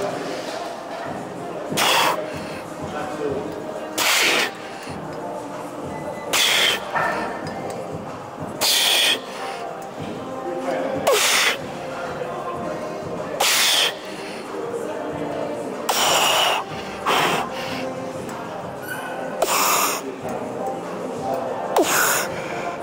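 A man's forceful breaths blown hard through the mouth, one sharp blast about every two seconds in time with his reps on a seated chest press machine, over background gym music.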